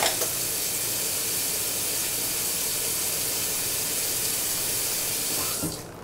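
Water running steadily from a kitchen faucet into the sink, then shut off just before the end with a short click.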